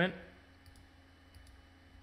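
A few faint, scattered clicks of computer keys, as a file's extension is renamed from MP3 to WAV.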